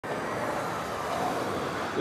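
Road traffic going by: a steady rush of tyres and engines from passing cars and a city bus driving close past.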